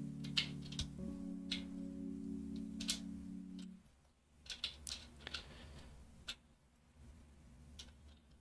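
Plastic keycaps being pressed onto mechanical keyboard switches and set down on the desk: scattered light clicks, a few seconds apart. Soft background music plays under them for the first half, then stops.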